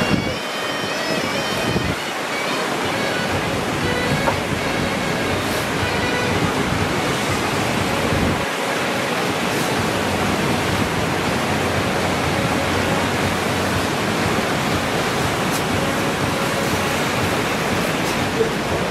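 Steady rushing wash of ocean surf breaking, with wind on the microphone. Faint high tones drift over it during the first couple of seconds.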